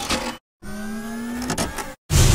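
Sound effects of an animated channel intro: a steady electronic hum made of several held tones, one of them slowly rising. It is broken by a brief dead-silent gap about half a second in, and there is a short burst near the end.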